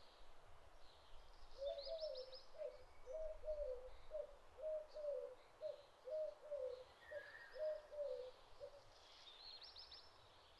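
Birds calling: one repeats a short, low cooing note about two times a second for most of the stretch, and quick high chirping runs come about two seconds in and again near the end, over faint outdoor background noise.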